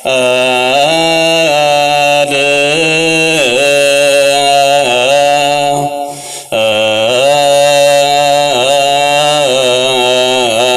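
A male voice singing Ethiopian Orthodox Ge'ez liturgical chant, the mesbak psalm verse sung before the Gospel. He holds long notes whose pitch bends and wavers, and pauses briefly for breath about six and a half seconds in.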